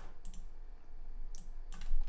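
A few short, sharp computer mouse clicks, about four spread across two seconds, as a form field is selected and its label box clicked into.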